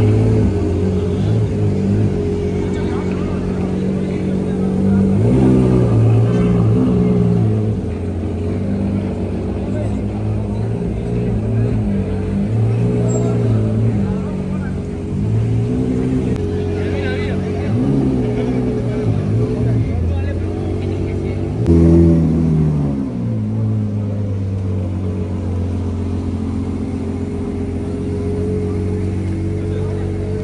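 Ferrari 812's V12 running at low speed as the car crawls past, with several short rises in revs. The loudest blip comes about two-thirds of the way through.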